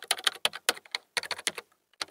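Computer keyboard typing sound effect: a fast run of key clicks, with a brief break about a second in.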